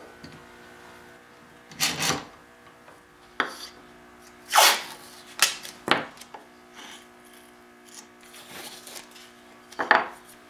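Blue painter's tape pulled off the roll in several short rips, mixed with sharp taps as the tape and a small wooden moulding piece are handled on a cutting board. A faint steady hum runs underneath.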